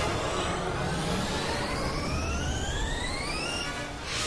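Cartoon sci-fi sound effect of a planet-destroying energy weapon building up: a rising whine over a dense rumble, climbing steadily in pitch and breaking off just before the end.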